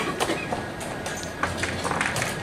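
Wooden chess pieces set down and chess clock buttons pressed at several boards: a handful of sharp clicks and knocks, a few near the start and two more late, over the steady hubbub of a crowded playing hall.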